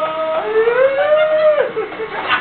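A man's voice singing long wordless held notes into a microphone: one note ends just after the start, the next slides up, holds, and falls away near the end.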